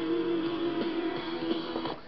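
Rock music with guitar playing from the GE clock radio's speaker, one chord held steady through most of it.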